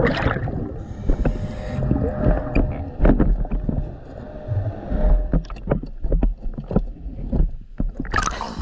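Underwater sound heard through a diver's camera: the diver's breathing regulator, with low rumbling surges of exhaled bubbles, over a scattering of sharp clicks.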